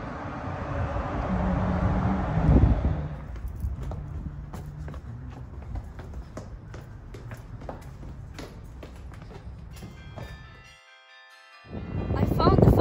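Church bells ringing, a run of low tones that changes pitch every second or so. Wind buffets the microphone for the first few seconds, with scattered knocks after.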